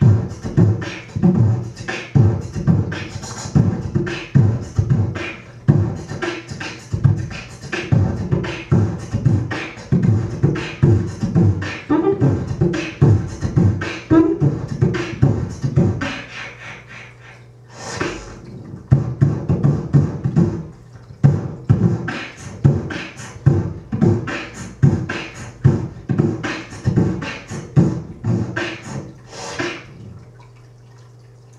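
Solo human beatboxing into a handheld microphone: a steady beat of kick-drum and snare sounds made with the mouth. A little past the middle the beat thins out for a couple of seconds, then a loud hissing sound brings it back and the pattern runs on.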